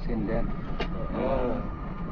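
Inside the cab of a moving intercity bus: a steady low engine and road rumble, with voices talking over it and one sharp click a little under a second in.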